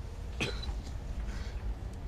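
A man coughs once, short and sharp, about half a second in, over a faint steady low hum.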